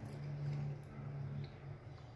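A woman's low, closed-mouth "mmm" hum, held on one steady note and fading out near the end, as she savours a bite of the dessert.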